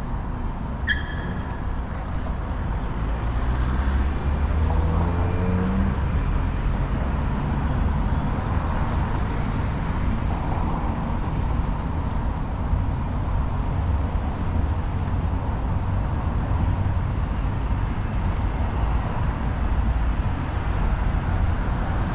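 City road traffic: cars passing on a street, a steady low rumble throughout. A rising engine note comes about four seconds in, and a brief high chirp about a second in.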